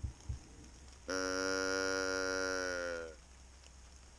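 Two soft knocks, then a hand-held deer call sounded once: a single drawn-out call about two seconds long, held on one pitch and dipping slightly as it fades out.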